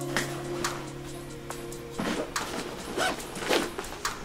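Intro music on a held, sustained chord that stops about halfway through. It gives way to irregular rustling, knocks and scrapes of a fabric backpack being handled.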